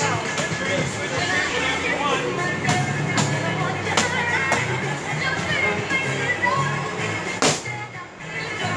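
Gloved punches smacking focus mitts, about half a dozen sharp hits spread irregularly, the loudest near the end, over background music with a steady beat.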